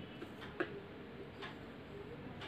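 A clock ticking about once a second, with a light knock just after the first tick, over the quiet room.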